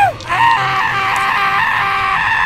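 A voice-acted scream of pain. One long cry breaks off and drops away at the start, and a second long, wavering cry begins a moment later and is held.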